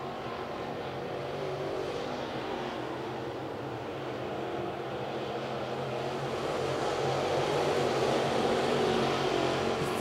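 A field of dirt late model race cars running laps together, their 602 crate V8 engines blending into one steady drone that grows gradually louder through most of the stretch.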